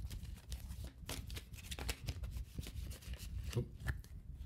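A deck of tarot cards shuffled by hand: a quick, irregular run of soft card-on-card clicks and slaps.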